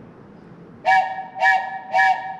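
Wooden train whistle blown in three short blasts about half a second apart, each a chord of several pitches sounding together, the third starting near the end. It is the three-short-blast signal that a stopped train is about to back up.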